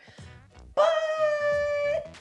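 A woman's voice singing the word "but" as one long held note at a steady pitch, drawn out for just over a second before it ends.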